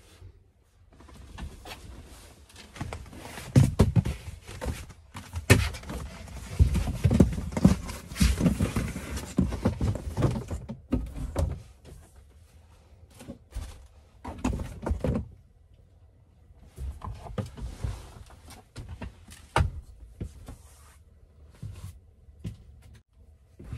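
A person moving about and getting up in a van's cab: a seatbelt being released, clothing rustling and things being handled, with a string of knocks and thumps. The busiest, loudest stretch fills the first ten seconds or so, and a few more scattered knocks follow later.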